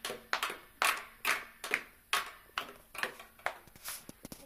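A small plastic toy drum beaten with a single stick in an uneven beat, about three hits a second, some of them quick double strokes.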